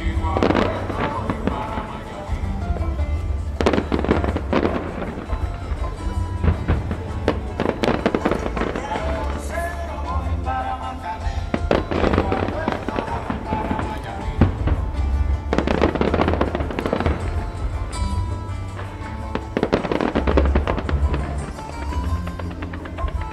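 Fireworks going off over loud music with a heavy bass line, the bursts coming in clusters every few seconds.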